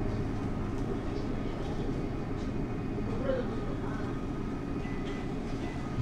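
Steady low rumble of the ventilation around a tabletop yakiniku grill, with faint voices in the background.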